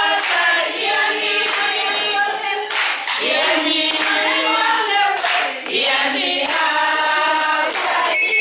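A group of people singing together, with hand clapping, in a celebratory song.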